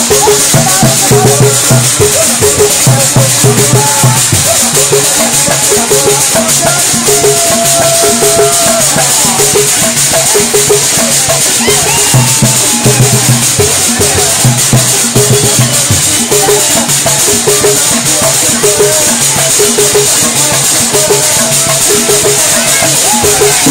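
Baikoko dance music played loud: a steady, driving drum beat with a constant shaker rattle over it, and voices singing or calling along.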